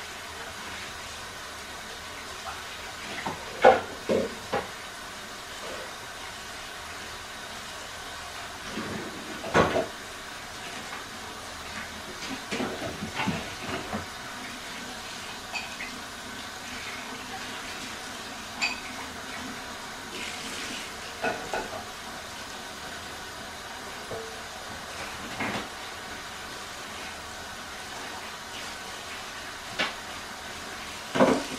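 Dishes being washed by hand in a kitchen sink: a steady hiss of water, with scattered clinks and knocks of dishes and utensils against each other and the sink.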